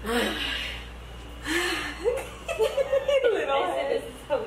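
Several women chuckling and laughing, a few short laughs one after another, mixed with a little half-spoken voice.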